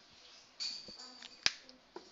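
Marker writing on a whiteboard: a high, scratchy squeak under the strokes, then a sharp click about one and a half seconds in as the marker knocks against the board, and a fainter click near the end.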